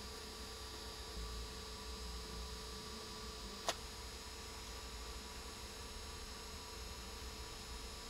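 Quiet, steady electrical hum with several faint steady tones in it, and a single short click about three and a half seconds in.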